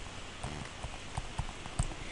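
Stylus tapping and stroking on a tablet screen while handwriting a word: a series of light, irregular taps over a faint hiss.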